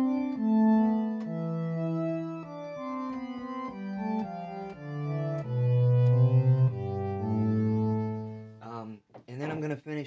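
Organ sound played on an electronic keyboard: slow, sustained chords over a bass line that steps downward, stopping about nine seconds in. A man's voice follows briefly near the end.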